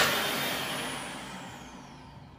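Exco Air & Co automatic hand dryer shutting off and spinning down once the hand is withdrawn. The rush of air fades steadily while a faint motor whine falls in pitch.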